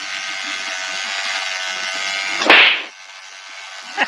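Electric toothbrush buzzing steadily, held out toward a cat. About two and a half seconds in, a sudden short hiss-like burst is the loudest sound.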